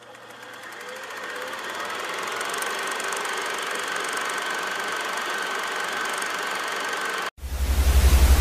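A steady mechanical running sound with a fine rapid clatter fades in and holds, then cuts off suddenly a little after seven seconds in to loud TV static hiss with a pulsing low buzz.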